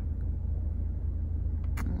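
Steady low rumble of an idling car engine, with two faint clicks near the end.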